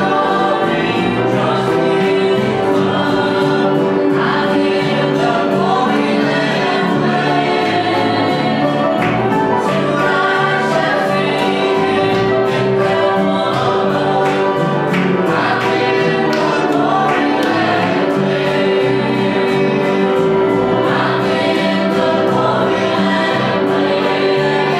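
A congregation singing a gospel hymn together, with instruments accompanying them on a steady beat.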